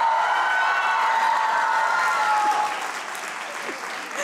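Studio audience applauding, with a steady held tone beneath the clapping that fades out a little under three seconds in; the applause then carries on more quietly.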